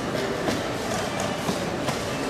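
Steady hubbub of a chess tournament hall, with a few sharp clicks of pieces and clock buttons being struck at blitz boards.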